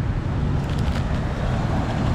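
Street traffic noise: motor vehicle engines running steadily nearby, a low hum over road noise.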